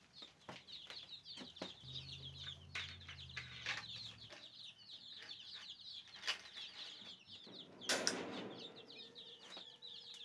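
A brooder full of day-old chicks peeping nonstop: rapid, high, falling cheeps from many birds at once. Scattered clicks and knocks come from handling the brooder and its waterer, and there is a louder rustling burst about eight seconds in.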